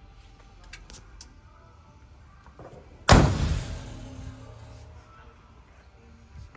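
The passenger door of a 1966 Chevrolet C10 pickup is slammed shut once, about halfway through, a loud thud that dies away over about a second.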